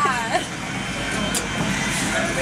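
A voice trailing off in the first half-second, then steady background noise of indistinct voices and room sound.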